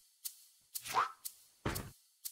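Faint shaker strokes in a steady rhythm of about two a second, with a short rising tone about a second in.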